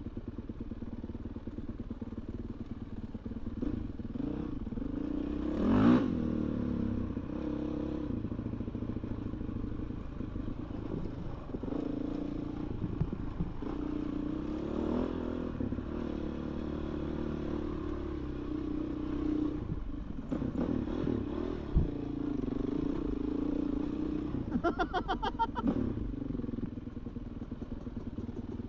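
Off-road dirt bike engine running under a rider's varying throttle, its note rising and falling, with a sharp rev about six seconds in and another quick run of revs near the end, over a rattle of chassis and trail clatter.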